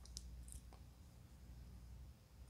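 Near silence: room tone with a low hum and a few faint clicks in the first second.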